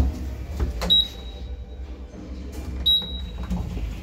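Inside a small TKE e-Flex elevator car: a knock right at the start, then two short high electronic beeps about two seconds apart from the car's push-button panel, over a low steady hum.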